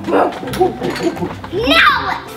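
People talking and laughing in short repeated bursts, with a high falling squeal near the end.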